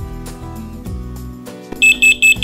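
Soft background music, then near the end a FireAngel FA3322 carbon monoxide alarm's sounder starts a quick run of short, loud, high-pitched beeps.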